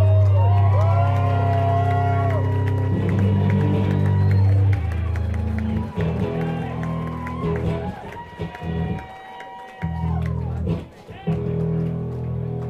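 Live amplified guitar music, with sustained low bass notes under higher notes that bend in pitch. The low notes drop out briefly about nine seconds in, then return.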